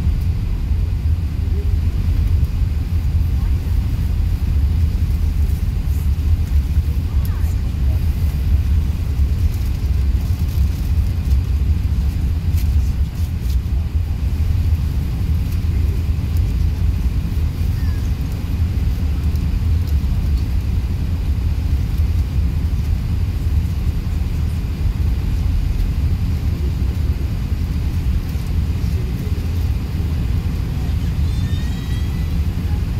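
Steady low rumble of cabin noise inside a four-engine Airbus A380 as it taxis, its engines and airframe heard from the passenger seat.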